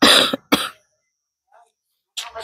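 A person coughing twice, two short harsh bursts about half a second apart.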